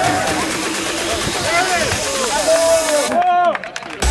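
A crowd of men shouting and cheering together, with long drawn-out shouts. About three seconds in, the sound briefly drops away.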